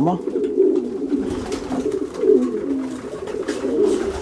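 A loft of racing pigeon cocks cooing, many birds at once, their coos overlapping into one steady low chorus.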